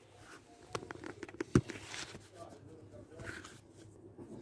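Handling noise of a phone camera being set down on the ground: a run of small clicks and rustles, with one loud knock about a second and a half in.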